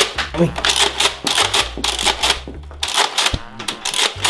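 Nerf Vortex disc blaster being fired, with a rapid, irregular run of hard plastic clicks and clacks as the blaster works and the discs strike and bounce off nearby surfaces.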